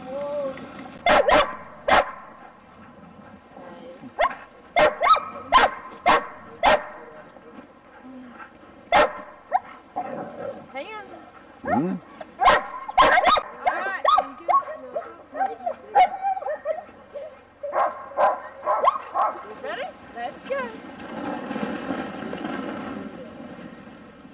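A team of sled dogs barking in sharp bursts, with yips and whines in between: excited harnessed dogs eager to run.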